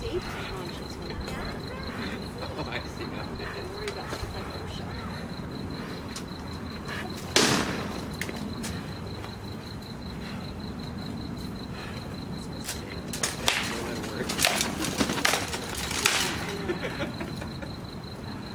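Sharp knocks of rattan swords striking shields and armour in armoured combat: one loud knock about seven seconds in, then a quick flurry of blows in the last few seconds.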